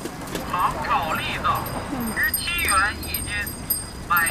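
A street hawker's call advertising sugar-roasted chestnuts at seventeen yuan a jin.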